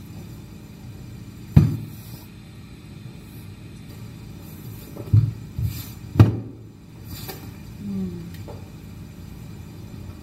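Four dull knocks and thumps of furniture being handled: one about a second and a half in, then three close together in the middle.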